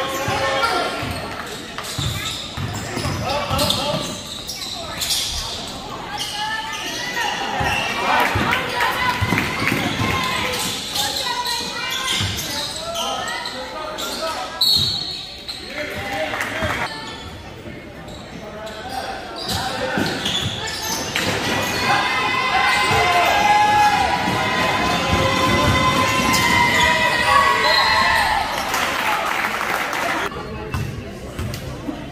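Basketball dribbled and bouncing on a hardwood gym floor during play, with voices of players and spectators calling out throughout, in a large gym.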